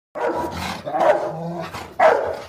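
A large dog barking, two loud barks about a second apart.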